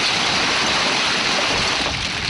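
Nissan pickup's rear wheel spinning in loose beach cobbles, a steady rushing noise of tyre and stones: the truck is stuck on the stone spit.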